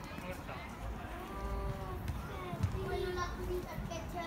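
Children's voices calling out across an open football pitch during play, with one ball-kick thud about two-thirds of the way through.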